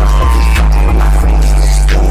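Rap beat playing loudly, with a deep sustained bass and sharp percussion hits.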